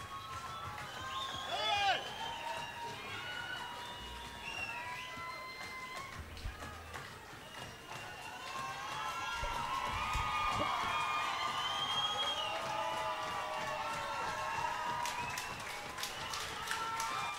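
A quiet stretch of a live show: faint music under crowd voices and shouts in a hall, growing somewhat louder about halfway through.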